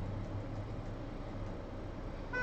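Quiet room tone with a faint, steady low hum and no distinct sound events.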